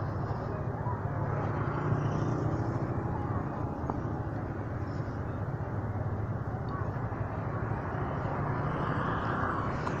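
Motorcycle engine running at low speed with a steady low hum, under road and traffic noise as the bike rolls along.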